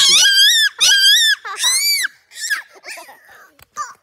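Young children's high-pitched playful screams of laughter: three long, wavering shrieks in the first two seconds, then shorter squeals and giggles.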